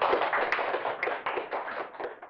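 Small audience applauding, separate hand claps coming quickly and irregularly, thinning and fading away near the end.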